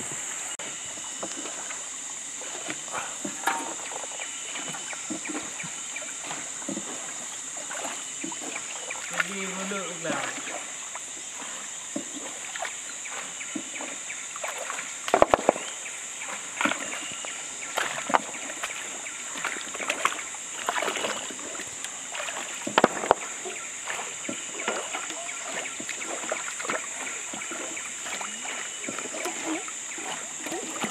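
River water sloshing and splashing around a wooden dugout canoe and a man wading in the shallows, with scattered small splashes and two sharp, loud splashes about fifteen and twenty-three seconds in. A steady high-pitched drone runs underneath throughout.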